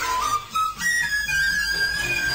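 A recorder played in a jazz style: a few short notes, then about a second in a long high note that bends slightly down in pitch and is held.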